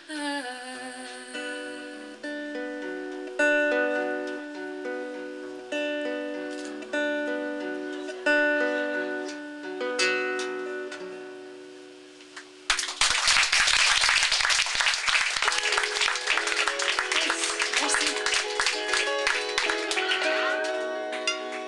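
Twelve-string acoustic guitar fingerpicked, with single notes and chord tones that ring out and fade. About thirteen seconds in it breaks into fast, loud strumming, which is the loudest part.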